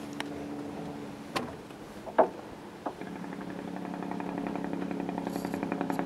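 A vehicle engine running with a fast, even pulsing that slowly grows louder through the second half. Before it come a steady hum and a few sharp clicks.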